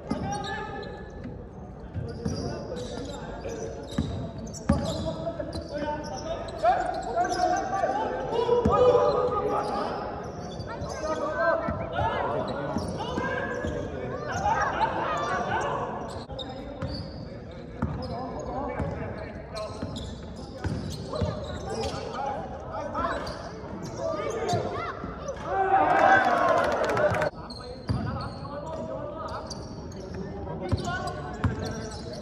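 A basketball bouncing on a gym court floor during play, the bounces echoing in a large hall, with players' voices calling out throughout and a louder burst of voices near the end.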